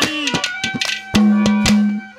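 Live Haryanvi ragni music: hand-drum strokes whose pitch swoops up and down, with sharp metallic clinks, then a steady held note from about a second in that breaks off near the end.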